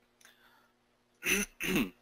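A man clearing his throat in two short voiced bursts, about a second in and just before two seconds.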